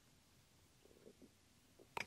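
Near silence: room tone, with a few very faint soft sounds after about a second.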